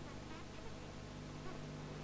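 Steady low hum with hiss, with a few faint, short chirp-like sounds.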